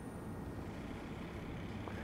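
Faint, steady whir of an otologic micro drill with a 0.7 mm diamond burr running against the stapes footplate as it drills the stapedotomy, with suction running alongside.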